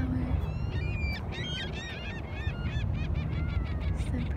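A flock of waterbirds calling: many short, high-pitched calls follow one another rapidly and overlap, over a steady low rumble.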